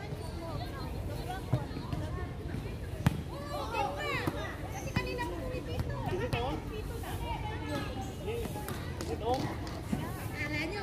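Several players' voices calling out and chattering across an outdoor volleyball court. A few sharp knocks of a ball come through, the loudest about three seconds in.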